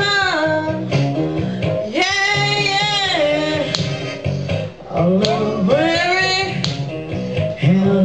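A woman singing a slow blues over instrumental backing, holding long sung notes that bend in pitch, three of them in turn.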